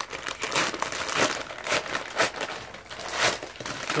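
Brown kraft-paper mailer envelope crinkling and rustling in irregular bursts as it is handled and opened by hand.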